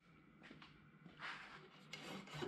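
Near silence: faint room tone, with a soft brief rustle of handling noise just after a second in.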